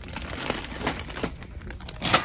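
Plastic wrapping of a bag of chocolates crinkling as it is picked up and handled: irregular sharp crackles, over a low steady hum.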